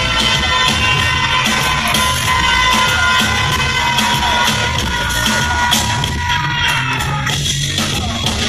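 Loud live concert music over an arena sound system, with a steady beat and a crowd cheering beneath it.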